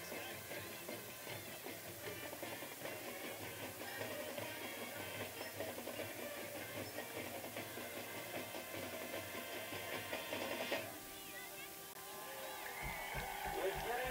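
High-school marching band playing, heard at a distance across the stadium; the music stops abruptly about eleven seconds in, leaving a quieter stretch with voices near the end.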